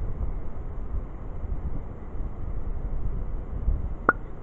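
Wind buffeting the microphone outdoors: a low, uneven rumble that rises and falls.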